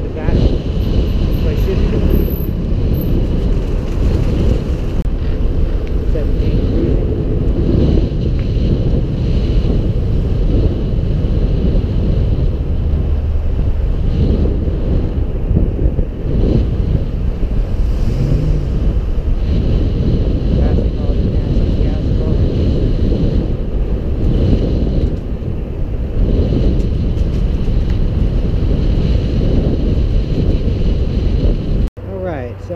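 Wind rumbling over the microphone of a camera riding on a moving e-bike, a steady low rumble that rises and falls, with road traffic alongside.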